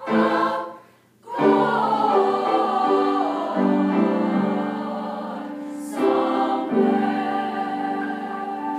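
Teenage girls' choir singing: a short clipped chord, a brief break, then a long held phrase of several voices.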